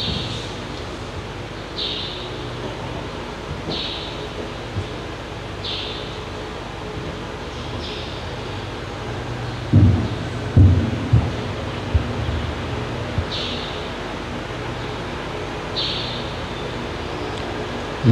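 Steady low hum of a church's public-address system with soft hissy puffs every two seconds or so. About ten seconds in comes a cluster of loud low thumps from the lectern microphone being handled.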